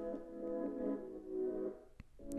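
A short music sting being composed on a laptop, playing back: sustained chords that shift every half second or so and stop just before the end.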